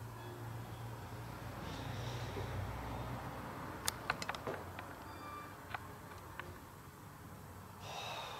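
Quiet room with a low steady hum, broken by a quick run of faint sharp clicks about four seconds in and two single clicks later.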